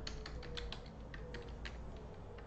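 Typing on a computer keyboard: a quick run of sharp keystroke clicks.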